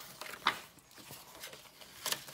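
Paper pages of a hand-bound junk journal being turned by hand: one short, sharp page flip about half a second in, then faint paper rustling.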